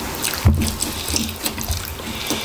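Close-miked wet chewing and smacking of a person eating braised chicken off the bone with his hands, with a dull thump about half a second in.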